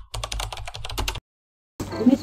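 Typing sound effect: about a dozen quick, evenly spaced keyboard clicks over about a second, cutting off suddenly into dead silence.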